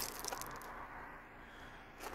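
Faint outdoor background noise with a few brief faint clicks near the start, and no engine running.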